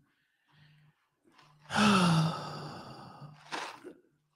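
A woman's long sigh into the microphone, breathy with a voiced tone that falls in pitch, about two seconds in. It is followed by a short breath.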